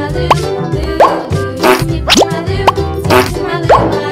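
Upbeat children's background music with a steady beat, with short rising "bloop" sound effects about five times.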